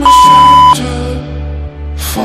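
A single loud electronic beep, one steady high tone about three-quarters of a second long, from a workout interval timer marking the end of a 30-second exercise; background music plays under it.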